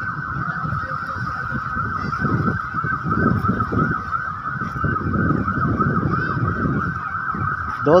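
A siren sounding in a fast up-and-down yelp, warbling several times a second, over low rumbling background noise. Near the end it sweeps up again from low and carries on yelping.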